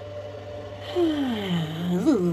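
Steady low hum, then about a second in a woman's drawn-out wordless 'hmm', falling in pitch and then held.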